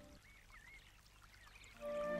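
Faint trickle of running water, with a few soft wavering tones. Background music comes back in near the end.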